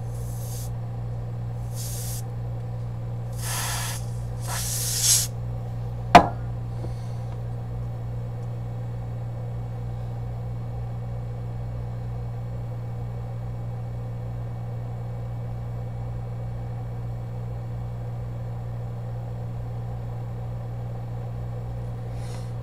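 Freeze spray hissing onto an iPhone 7 Plus logic board in four short bursts over the first five seconds, cooling the board to find a shorted power line. A sharp click comes about six seconds in, and a steady low electrical hum runs underneath.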